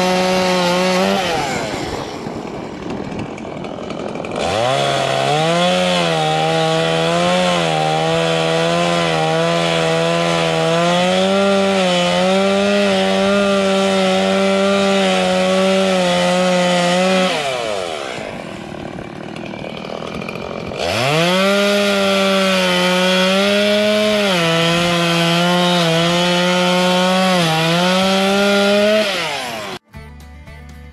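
Gas chainsaw cutting off the coop's wooden posts: it runs at full throttle with its pitch dipping and wavering under load. It drops back to idle about two seconds in and again a little past halfway, revving up for another cut each time, and stops just before the end.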